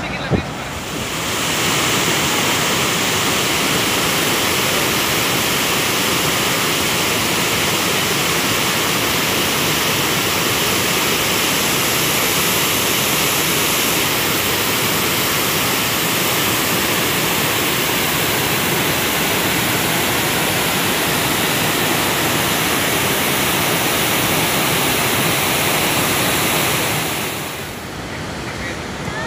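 Reservoir water pouring over a dam's overflowing stepped spillway, a steady loud rush. It builds up in the first second or two and drops away near the end.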